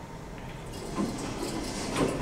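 The stainless steel doors of an Otis Otilec hydraulic elevator sliding shut. A rushing sound builds from just under a second in, with a knock at about a second.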